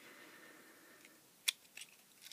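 Small clicks and a faint scrape from handling the opened plastic case and circuit board of a cheap lithium cell charger: a soft scrape, then one sharp click about one and a half seconds in, followed by a couple of lighter clicks.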